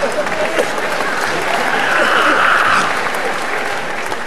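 Live audience applauding, with scattered voices mixed in; the clapping eases off near the end.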